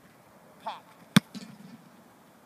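A football punted: the kicker's foot strikes the ball once, a single sharp smack a little over a second in.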